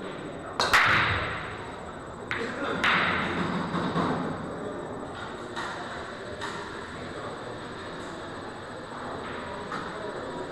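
Pool break shot: the cue strikes the cue ball, which smashes into the racked balls with a loud crack less than a second in, followed by the clatter of balls hitting each other and the cushions. Smaller clacks of rolling balls colliding follow a couple of seconds later and then fade to scattered clicks.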